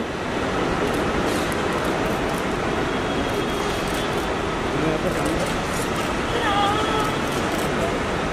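Steady background noise of traffic and people, with faint indistinct voices and no clear single event.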